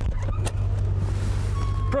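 DeLorean DMC-12's V6 engine idling with a steady low hum. A sharp click comes about half a second in, as the gull-wing door unlatches and opens.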